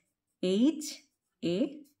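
Speech only: a woman's voice saying two short words, one about half a second in and one about a second and a half in, with silence between them.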